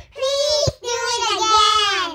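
Children's voices in a sing-song chant of the phrase "Please do it again", in two phrases with a short break just under a second in.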